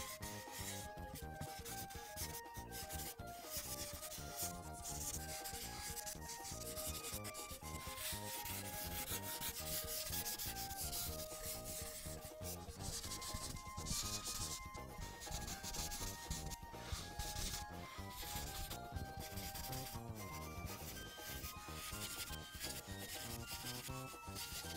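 Felt-tip paint marker scratching across paper in many short back-and-forth strokes, as an area is filled in solid colour. A faint, soft melody runs underneath.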